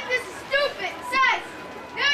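Children's voices, high-pitched, in several short bursts of talking or calling.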